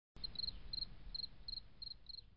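Insect chirping faintly: short high trills of two to four quick pulses, repeating about every third of a second, over a low background hum.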